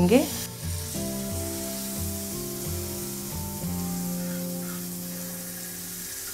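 Butter melting and sizzling on a hot tawa (flat griddle), spread about with a slotted spatula; a steady hiss that starts about half a second in. Faint background music runs underneath.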